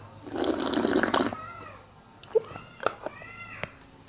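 A person slurping a sip of coffee from a mug: one loud, airy slurp lasting about a second, followed by a few faint clicks.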